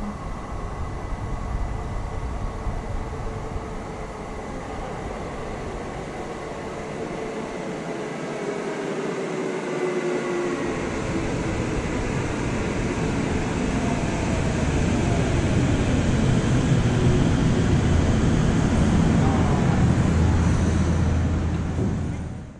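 Tokyo Metro 15000 series electric train pulling into the platform. Its motor whine slides in pitch over the rumble of the wheels on the rails, growing louder as it nears and loudest in the last few seconds.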